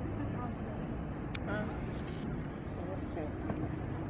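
Outdoor street ambience: a steady low rumble of traffic with faint, indistinct voices of people around.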